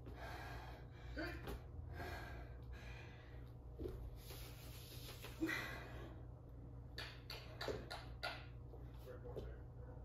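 A woman breathing hard in repeated heavy breaths while exerting through a burpee set, with a few knocks about seven to eight seconds in.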